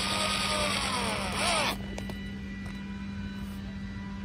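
Power drill driving a screw into a mahogany board. The motor whine rises and falls in pitch and stops with a click about a second and a half in. A quieter steady hum carries on after.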